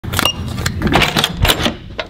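Electronic keycard door lock and lever handle: a brief high beep just after the start, then a run of sharp mechanical clicks and rattles over about a second and a half as the lock releases and the handle is pressed down to open the door.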